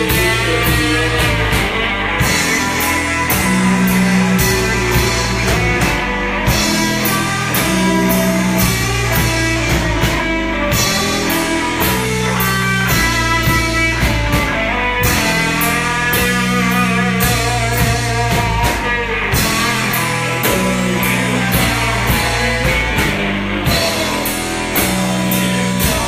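Live rock band playing electric guitar over a drum kit, loud and steady, with a low riff repeating about every four seconds.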